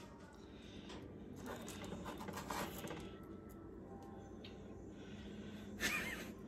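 Quiet room with faint rustling, then a brief louder rustle near the end as hands pick up a baked cookie from a parchment-lined baking sheet.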